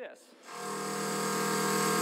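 A steady motor hum with a stack of even tones, swelling in over about half a second and then holding level.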